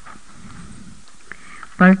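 A pause in speech: faint, steady background noise of the recording, then a voice starts speaking loudly near the end.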